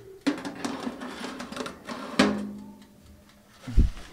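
A metal baking tray slid into a small countertop electric oven, scraping along its metal guides for about two seconds and ending in a clank with a brief metallic ring. A dull thump follows near the end.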